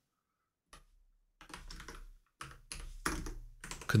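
Typing on a computer keyboard: a single keystroke just under a second in, then a quick run of keystrokes from about a second and a half in.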